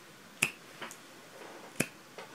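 A person snapping their fingers twice, two sharp snaps about a second and a half apart, with faint room tone between.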